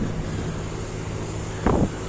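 Steady outdoor rumble with wind on the phone's microphone, as the camera-holder walks; a short vocal sound comes near the end.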